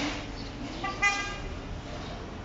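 A vehicle horn gives one short, flat toot about a second in, over the steady noise of street traffic.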